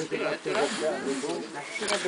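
Indistinct background chatter of several people talking at once, with no single close voice.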